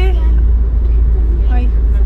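Steady, loud low rumble of a car's engine and tyres heard from inside the cabin while driving through a road tunnel.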